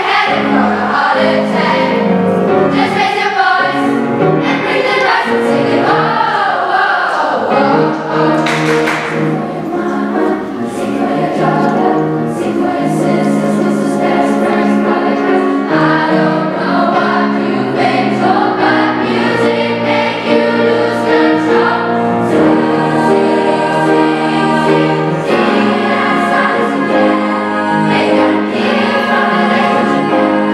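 Mixed youth choir singing in several parts with piano accompaniment, the voices holding and moving through sustained chords.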